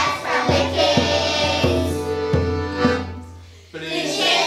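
A group of children singing a song in chorus over backing music with a beat. The music dies down briefly about three seconds in, then comes back in.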